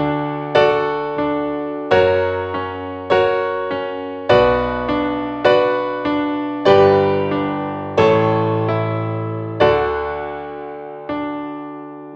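Solo piano playing a moderate chord progression, D, F♯m, Bm, G, A, back to D. The right hand strikes each chord with an added chord tone under the thumb, over a steady pulse of notes about every 0.6 s, each left to ring.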